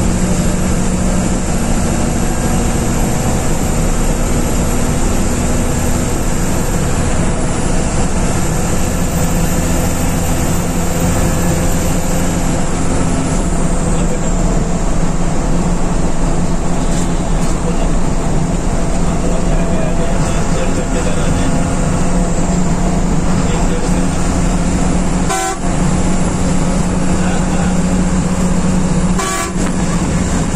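Diesel engine of a BS-3 sleeper coach running steadily at cruising speed, heard from inside the driver's cabin with road and wind noise over it. The sound dips briefly twice near the end.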